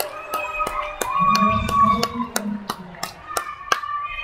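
Volleyball bench and crowd celebrating a point: steady rhythmic hand clapping, about three to four claps a second, with voices shouting and chanting over it, loudest around the middle.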